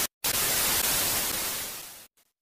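TV static sound effect: an even hiss of white noise that starts after a brief cut about a quarter second in and fades out near the end.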